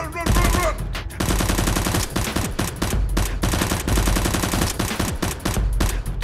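Rapid automatic gunfire, many shots a second in long bursts, over a low pulsing bass beat.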